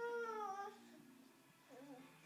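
A toddler's short, high-pitched vocal cry, falling slightly in pitch over most of a second, followed near the end by a fainter, wavering little sound.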